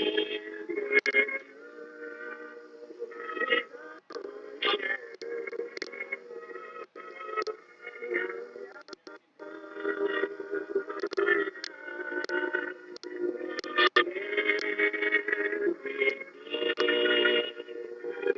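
A woman singing a slow song with instrumental backing, her notes held long between short breaks, on an old soundtrack with the top end cut off.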